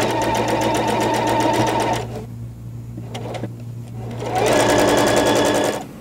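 Electric sewing machine stitching a fabric border seam at a rapid, even needle rhythm, in two runs: about two seconds from the start, then a pause, then about a second and a half more from just past four seconds in.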